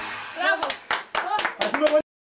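A few people clapping by hand, about ten uneven claps, with short shouts and calls mixed in.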